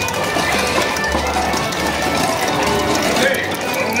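Busy game music and sound effects from a screen-shooting ride game, with voices in the background.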